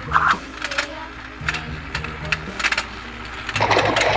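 Battery-powered toy fishing game running, its motor and gears clicking as the board turns, over background music. Near the end a splash sound effect comes in.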